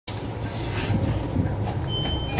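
Hyundai New Super Aero City city bus running, with a steady low engine and road rumble heard from inside the cabin. Near the end the 2020-model stop-request bell starts with a single high electronic beep tone as the button is pressed.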